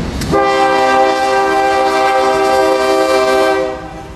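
Air horn of a CSX diesel freight locomotive sounding one long blast, several notes together. It starts about a third of a second in and cuts off shortly before the end, over the low rumble of the passing train.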